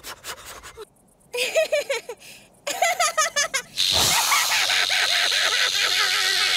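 Two cartoon characters sobbing and wailing in short bursts with pauses between. About four seconds in, a sudden loud, hissing wash of noise takes over, with voices faint within it.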